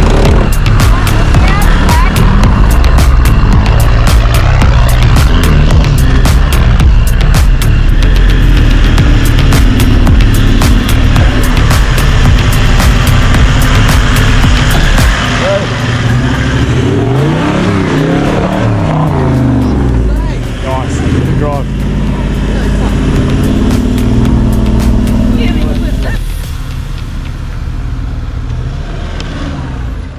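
Four-wheel-drive engine revving hard as it climbs through a deep rutted creek exit. The revs rise and fall several times in the second half. Loud music plays over much of it.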